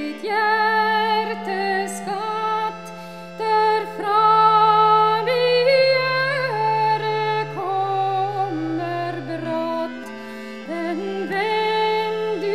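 Solo accordion playing a Norwegian folk tune: an ornamented reed melody over held bass notes that change every second or two. The sound softens briefly between phrases, about three seconds in and again near ten seconds.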